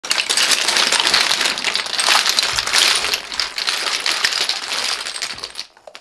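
Dozens of plastic and glass foundation bottles and tubes tipped out of a wire basket onto a shag rug, clattering against each other in a dense run of knocks for about five and a half seconds before stopping.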